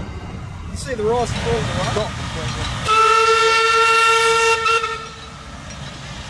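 Steam locomotive whistle blown once as the C17 steam locomotive approaches the level crossing: a single steady blast of a little under two seconds, over a low rumble of train noise.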